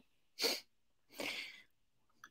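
A man's breath sounds through a video-call microphone: a short sharp breath about half a second in, then a longer, softer one a second later.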